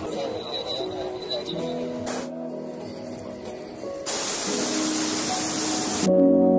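Hot-air balloon's propane burner firing, a loud even hiss that starts about four seconds in and cuts off suddenly, with a brief burst of the same hiss about two seconds in. Background music with sustained tones plays underneath.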